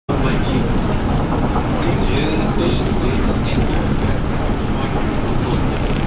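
Steady running noise of an Osaka Metro New Tram, a rubber-tyred automated guideway train, heard from inside the car as it travels along its concrete guideway: a dense, even rumble from the tyres and drive.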